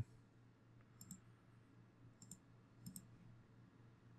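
A few faint computer mouse clicks, roughly one a second, against near silence.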